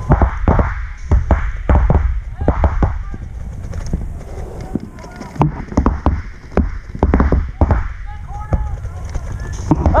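Paintball fire: rapid strings of sharp pops from markers shooting, dense for the first few seconds, then sparser, with another cluster later on.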